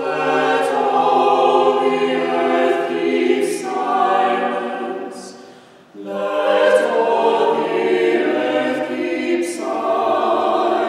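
A small mixed choir of six voices singing a hymn unaccompanied, in long held chords. Just before six seconds in, the chord fades out into a short breath, and then the next phrase begins.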